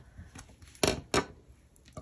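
Two brief handling sounds a few tenths of a second apart, about a second in, as hands move a bulky crocheted band and crochet hook on a tabletop, with faint small clicks between.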